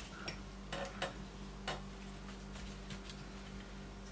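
Scattered sharp clicks with faint rustling as flower stems are handled and pushed into the chicken wire of a pedestal bowl, most of the clicks in the first two seconds, over a low steady hum.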